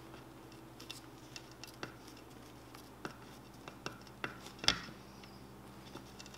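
Faint scattered ticks and scratches of a rag-covered fingertip pressing and rubbing a vinyl chassis skin down onto an RC truck chassis, with one louder click a little under five seconds in.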